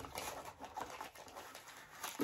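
Irregular soft rustling and handling of packaging as a camera in its white wrapping is lifted out of a cardboard box.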